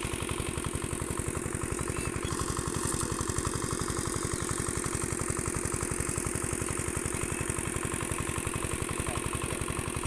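A small engine running steadily at idle, with a rapid, even pulsing.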